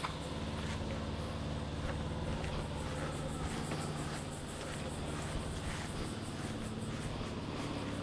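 A steady low mechanical hum from a running motor, with a few faint soft ticks over it.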